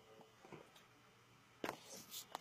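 Near silence: quiet room tone, with a single short click near the end.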